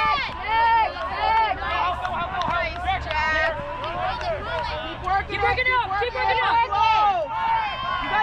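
Many voices calling and shouting over one another: players and teammates on the sideline yelling during a point of an ultimate frisbee game, with no single clear speaker.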